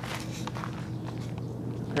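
A few soft footsteps of a hiker on a dirt trail.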